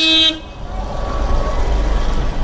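A short vehicle horn toot, then the low engine rumble of an SUV driving past close by, growing louder as it draws level.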